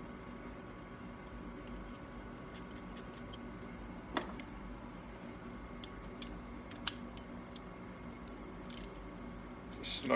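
Light clicks and taps of small metal parts and a socket being handled while a main jet is changed on an Amal Premier carburettor's float bowl, over a steady low hum. The sharpest click comes about four seconds in, with a few fainter ones a couple of seconds later.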